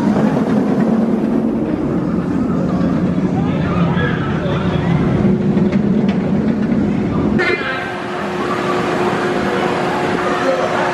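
A B&M wing roller coaster train running along its steel track close by, a loud steady rumble mixed with riders' voices. The rumble cuts off abruptly about seven and a half seconds in, leaving fainter sound.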